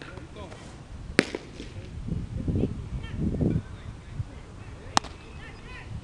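A pitched baseball smacking into a catcher's leather mitt with a sharp pop about a second in, followed near the end by a second sharp crack of the same kind.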